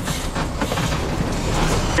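Fire truck engine and road noise heard from inside the cab while driving, with scattered small knocks and rattles.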